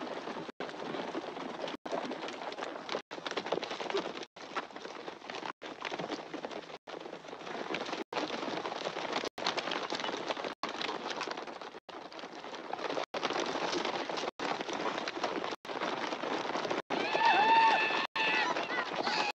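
Hooves galloping in a steady dense rumble, broken by brief silent gaps about every second and a quarter. Near the end there is a high wavering cry.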